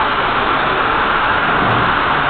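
Steady, even running noise of O-scale and G-scale model trains rolling around the layout's track.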